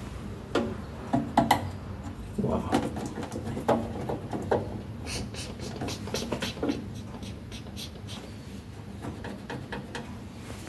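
Irregular clicks, knocks and scrapes of hands working at the wire terminals of a changeover switch in a metal enclosure, with a run of lighter, sharper ticks about five seconds in.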